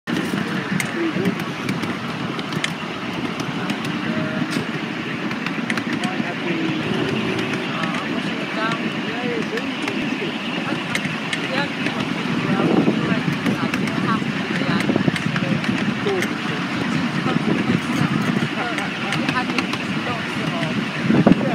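Indistinct chatter of voices over steady outdoor background noise.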